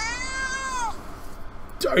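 A house cat meowing once: a single call about a second long that rises and then falls in pitch.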